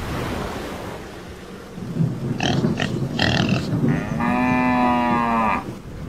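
Cow mooing: a steady low rush of noise, then a few short rough grunts, then one long moo about four seconds in that lasts about a second and a half.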